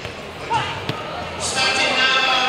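Crowd of spectators and coaches talking and calling out in a sports hall, the voices growing louder about three quarters of the way through, with one sharp knock a little before midway.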